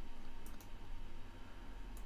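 Computer mouse button clicks: a quick double click about half a second in and another near the end, over faint background hum.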